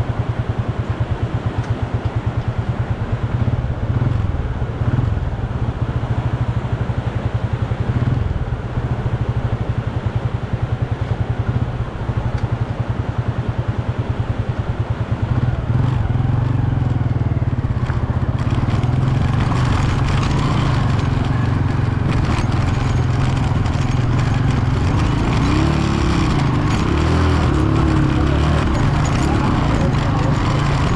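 An engine running with a low rumble, rapidly pulsing for the first half and steadier from about halfway.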